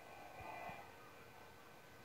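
Near silence: faint background noise with a thin steady electronic hum, and a slight, brief rise in noise about half a second in.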